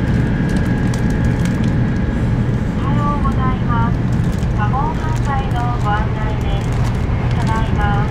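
Steady low rumble of a Shinkansen bullet train running at high speed, heard from inside the passenger cabin. From about three seconds in, voices sound over it.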